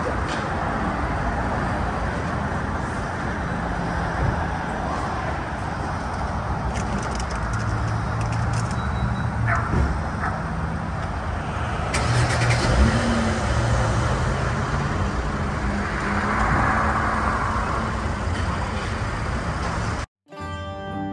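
Steady motor-vehicle noise: a car's engine hum and road rumble, with a brief rise in engine pitch about thirteen seconds in.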